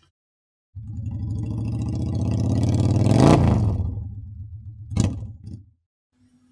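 A motor vehicle's engine passes by: it starts suddenly, grows louder, drops in pitch as it passes and then fades away. A single sharp crack comes near the end.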